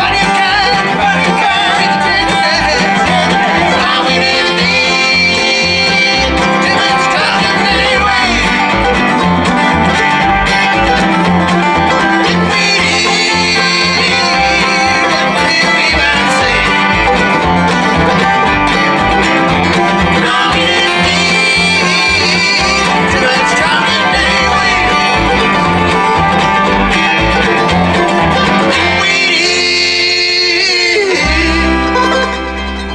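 Live bluegrass string band playing: acoustic guitar, mandolin, fiddle, resonator guitar and upright bass over a steady plucked bass pulse. The bass drops out about a second before the end as the tune winds down.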